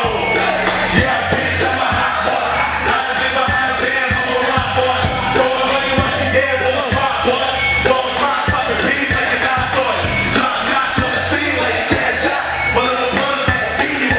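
Loud hip-hop beat through a club sound system, its bass line dropping in right at the start, with rapping into microphones over it.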